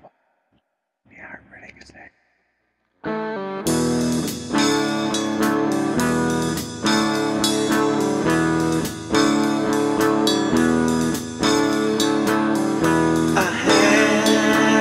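A faint whispered voice, then a short silence, then about three and a half seconds in a rock band comes in loud: electric guitar chords over a steady drum beat.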